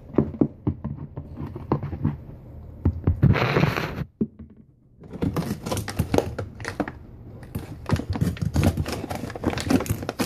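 Rummaging in a wooden cabinet: dense light clicks, knocks and rustling as items are moved about, with a louder crinkling rustle about three seconds in and a short lull just after.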